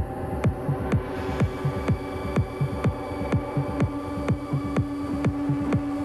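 Melodic techno playing from vinyl: a steady four-on-the-floor kick drum about twice a second under sustained synth tones. The high end opens up about a second in, and a held low synth note grows louder around four seconds in.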